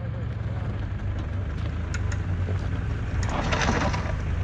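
Mitsubishi Montero SUV's engine idling steadily while the vehicle stands still, with a short rough noise near the end.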